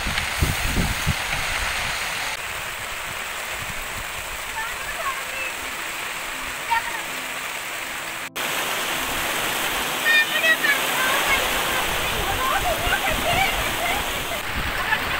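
Heavy rain pouring down steadily, a dense even hiss. It drops out for an instant a little past halfway and then continues slightly louder.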